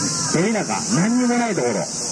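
A man's voice over a handheld microphone and loudspeaker, speaking with long, drawn-out vowels.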